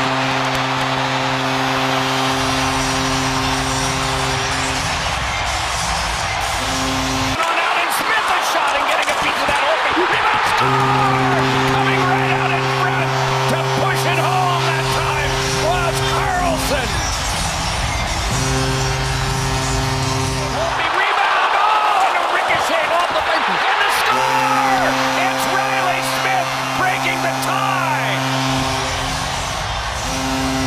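Arena crowd cheering after goals, with a goal horn sounding in long sustained blasts several seconds each, broken twice where the goal clips change.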